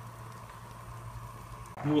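A steady low hum with a faint hiss, with nothing sudden in it; a man starts speaking near the end.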